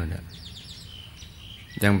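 A man speaking Thai stops just after the start and starts again near the end. In the pause between, faint high bird chirps are heard against a low background hiss.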